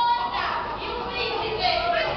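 High-pitched voices calling out, echoing in a large hall.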